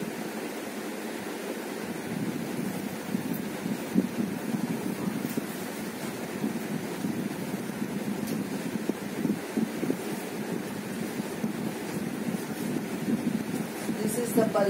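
Steady rushing background noise, an even hiss with no rhythm or distinct events.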